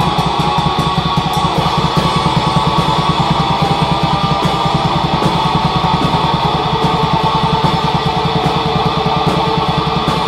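Raw black metal: distorted electric guitar over a fast, even drum beat, played continuously.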